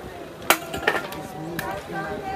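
Metal shovel blade striking and digging into stony soil: a sharp clink about half a second in and a second one just before a second in.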